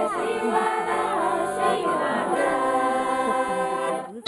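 Women's choir singing a folk song in several voices, accompanied by an accordion holding steady chords.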